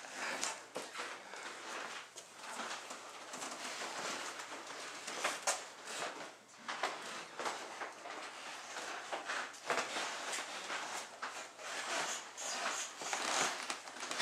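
Irregular scuffs, rustles and soft clicks of people moving about and of a hand-held camera being handled in a small, hard-walled room.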